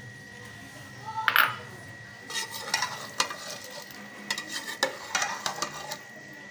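A metal spoon stirring and scraping through thick curry masala in an aluminium pot, with a soft sizzle of the masala frying. The spoon's scrapes and clinks come thick and fast from about two seconds in.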